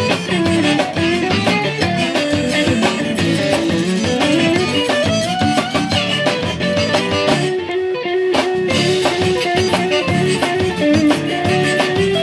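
Live zydeco band playing an instrumental passage with no vocals: saxophone and piano accordion over electric bass, drum kit and a scraped rubboard. About eight seconds in the rattling percussion stops for a moment while a long held note carries on.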